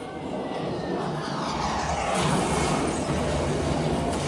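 Sound from a museum's projected audiovisual war display: a loud noise that swells up about a second in and stays loud.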